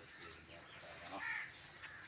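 A crow cawing once, about a second in, over faint chirping of small birds.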